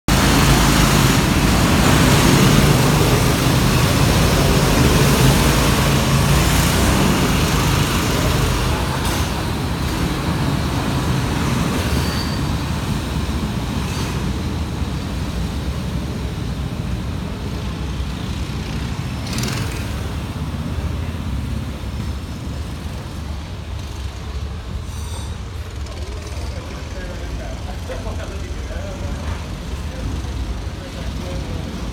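Go-kart engine running loud close by, the sound dropping away over the following seconds as the kart pulls off onto the track, with engine noise from karts out on the circuit continuing.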